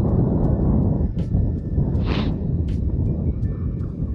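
Wind rushing over the microphone and a small single-cylinder motorcycle engine running on the move, with background music and short sharp ticks over it.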